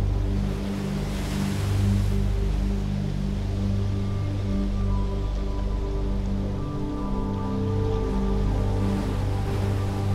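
Ambient music of sustained low chords, steady throughout, under a soft wash of wind noise that swells about a second in.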